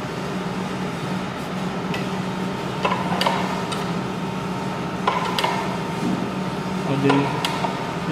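A few sharp metallic clicks and knocks as parts of a hand-cranked flywheel meat slicer are handled and wiped during cleaning: a pair about three seconds in, another pair about five seconds in, and more near the end. A steady low hum runs underneath.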